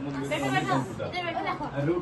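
Speech only: people chatting in conversation.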